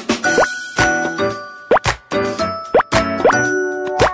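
Short, bright music jingle with cartoon 'plop' sound effects, four quick rising pops over the tune.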